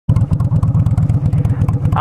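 Honda Shadow VLX's V-twin engine idling, a steady, even pulsing exhaust beat with no revving.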